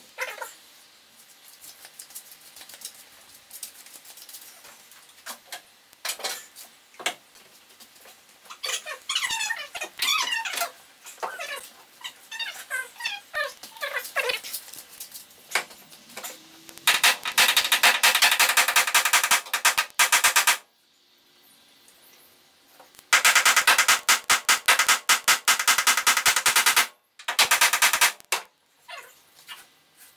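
A dog whines repeatedly in short falling cries. Then a power tool runs in two long bursts with a rapid pulsing beat, each a few seconds long, and each stops suddenly.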